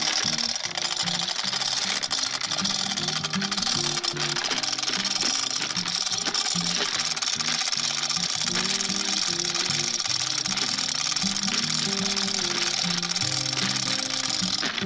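Hand-chain hoist being hauled hand over hand: a fast, continuous clatter of chain links running through the hoist with the ratchet pawl clicking, as it lifts a tree stump under load. Background music with a low melody plays throughout.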